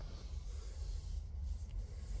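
Low rumbling and rubbing handling noise on a phone's microphone as the phone is moved.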